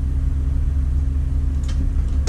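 Motorhome engine idling, a steady low rumble with an even hum, heard from the driver's seat inside the cab.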